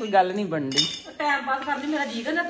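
A sharp metal clink of kitchen utensils at a gas stove, about three-quarters of a second in, while a bread slice goes onto a steel griddle, over a woman's voice.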